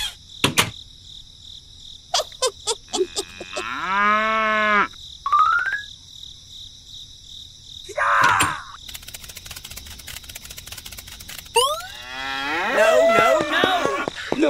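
Cartoon-style sound effects over a steady bed of chirping insects: a cow mooing about three and a half seconds in and again near the end, with scattered clicks, a short rising whistle and a rapid run of clicks in between.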